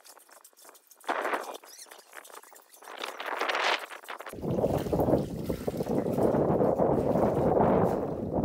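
Dirty water being scooped and splashed in short bursts at the bottom of a plastic water tank. About four seconds in, a loud, steady low rumbling noise starts suddenly and takes over.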